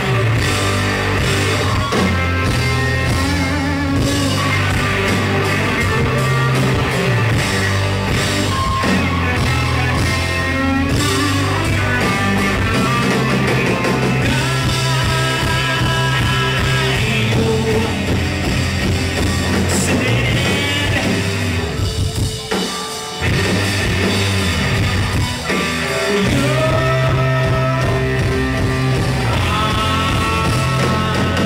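A rock band playing live: electric guitar, bass and drum kit in an instrumental passage. The band briefly drops out a little past two-thirds of the way through, then comes back in at full force.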